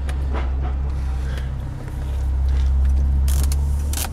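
A 2000 Ford Taurus's 3.0-litre 24-valve DOHC V6 idling, heard from inside the cabin as a steady low hum that dips briefly about halfway through. A short hiss comes near the end.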